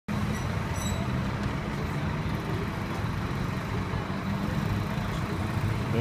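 Street traffic: vehicle engines running nearby, a steady low hum with no break.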